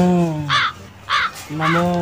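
A man's voice holding one long drawn-out chanted note that rises and falls, then three short bird calls about half a second apart, with the chanting voice returning near the end.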